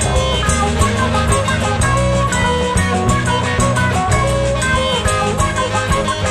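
1970s progressive rock band playing: guitar lines over bass and drum kit, at a steady, full level.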